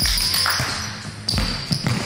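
A basketball being dribbled on a hardwood gym floor: a string of low bounces at an uneven pace, about five in two seconds.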